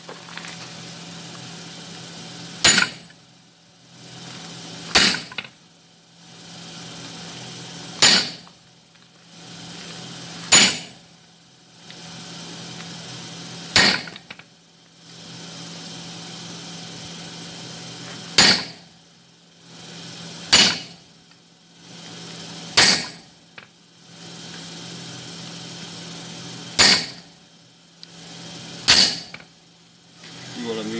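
Ten ringing hammer blows on a handled top tool held on red-hot steel on the anvil, one every two to three seconds, forging the taper of a hot cut hardie. A steady low hum runs underneath.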